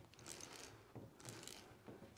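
Faint scraping of a C.K Armourslice cable stripper's blade working round the steel wire armour of an SWA cable, heard twice against near silence.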